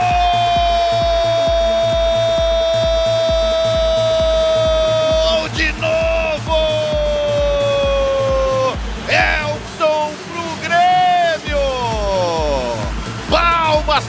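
Background music with a steady beat, over a football commentator's drawn-out goal cry held for about five seconds and then again for a few seconds more, sagging slightly in pitch.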